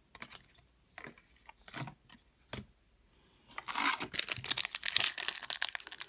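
A few faint scattered clicks, then from about three and a half seconds in, the crinkling and tearing of a foil trading-card pack being ripped open by hand.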